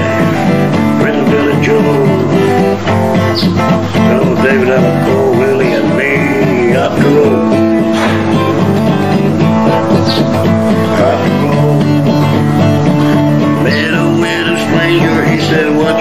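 Steel-string acoustic guitar playing a country-blues instrumental passage, strummed chords with a wavering melodic line above them, steady and full throughout.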